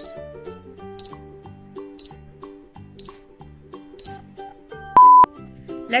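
Countdown timer sound effect: five short high ticks, one a second, then a longer single beep about five seconds in as the count runs out. Background music with a steady beat plays underneath.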